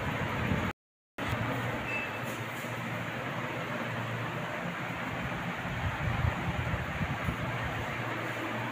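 Steady rushing background noise with no clear pitch or rhythm, broken by a brief drop to silence about a second in.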